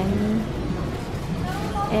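A woman's voice trailing off at the start and speaking again near the end, over a steady low background hum.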